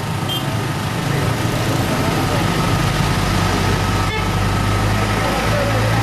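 A steady low engine hum, as of an idling motor, that grows a little stronger about a second in, with a faint steady high tone above it.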